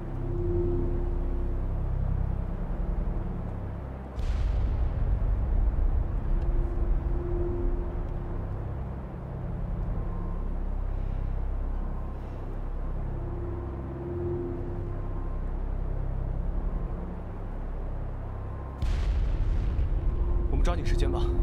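Deep, continuous rumble of a volcano stirring, as a drama sound effect, surging suddenly louder with a brief hiss about four seconds in and again near the end. A soft sustained musical note comes back every several seconds underneath.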